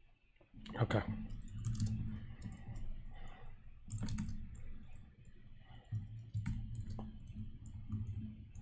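Typing on a computer keyboard: a scattered run of sharp key clicks.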